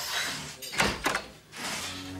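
A door being opened and shut: a few sharp knocks, the loudest two close together about a second in.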